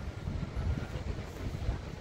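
Outdoor rumble on a phone's microphone, uneven and low, with a steady hiss behind it: wind on the microphone, typical of a seaside.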